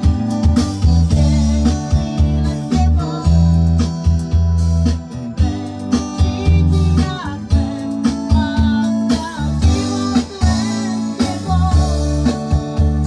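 A band plays Romani pop music, with guitar and keyboard over a steady bass line and drum beat; the guitar melody bends up and down in pitch.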